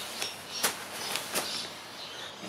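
A few light, sharp clicks over a soft rustle: a bag of perlite and a glass bowl of perlite and polystyrene beads being handled.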